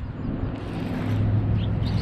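Baitcasting reel being cranked as a hooked bass is fought in, under a steady low rumble.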